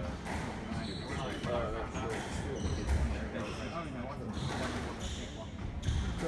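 Squash ball bouncing on a hardwood court floor with a few dull thuds, the loudest about three seconds in, under indistinct talk.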